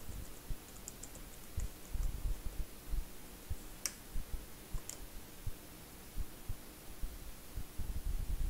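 Faint, irregular keystrokes on a computer keyboard as a password is typed, with a couple of sharper clicks about four and five seconds in.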